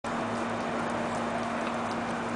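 A steady hiss with a constant low hum, and a few faint clicks from a dog wheelchair cart's small wheels rolling over brick pavers near the end.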